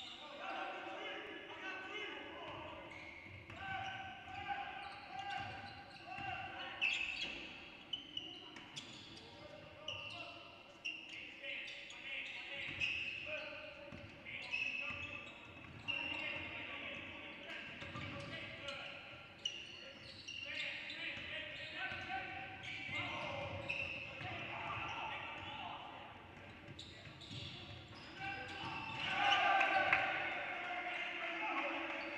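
Live basketball play on a hardwood gym court: the ball bouncing, sneakers squeaking, and players' indistinct shouts carrying through the hall, with a louder burst of activity near the end.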